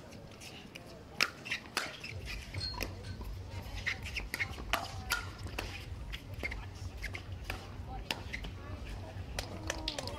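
Pickleball paddles striking a plastic pickleball back and forth in a rally, a sharp pop at irregular intervals, about one a second or more. A low steady rumble sits underneath from about two seconds in.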